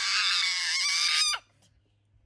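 A young child shrieking with laughter: a rough, breathy squeal that ends in a short falling glide and cuts off about a second and a half in.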